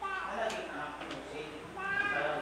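A man speaking off the microphone, in a run of short phrases.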